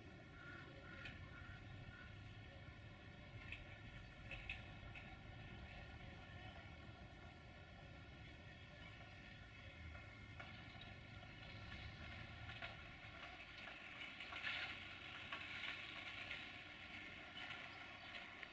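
Faint, distant rumble of a semi-trailer truck passing on a road, fading out about twelve seconds in. Faint short higher sounds come and go over it, loudest about three-quarters of the way through.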